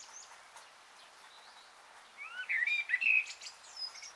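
Bird chirps: a short cluster of quick rising and falling notes a little after two seconds in, lasting about a second, over a faint steady hiss, with a thin high chirp near the start and another near the end.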